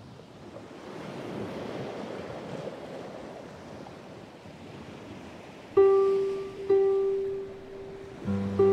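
Sea waves washing in, swelling up over the first seconds. Near the end a harp plucks a note, louder than the sea, and plucks the same note again about a second later, each left ringing.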